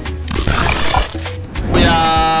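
Radio show intro jingle: music over a heavy bass beat with a swishing effect, then a long held note rising in near the end.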